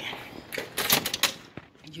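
A service door being unlatched and pushed open: several sharp clicks and knocks in quick succession, the loudest about a second in.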